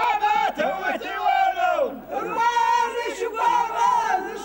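Group of men singing an Amazigh ahidous chant together, long rising and falling sung lines, with a short break about two seconds in.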